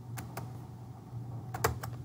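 Sharp clicks from working a laptop computer: two close together, then three in quick succession near the end, over a low steady hum.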